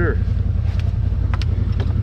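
CFMOTO ZFORCE 950 Sport's V-twin engine idling with a steady low rumble, with a few short clicks over it.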